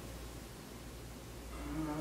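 Low, steady hum of room tone in a pause, with a man's hesitant "uh" near the end.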